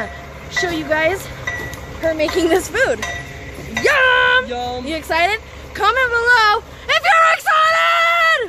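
A woman singing loudly and theatrically, with long held notes about four seconds in and again near the end, over a steady low background rumble.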